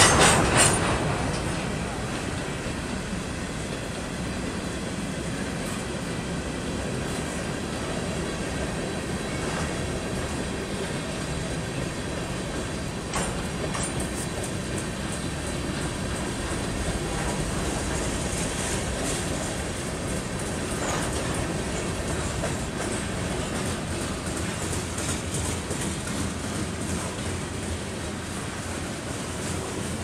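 Freight train of covered hopper cars rolling past at close range, a steady rumble and clatter of the wheels on the rails. A brief loud burst of noise right at the start.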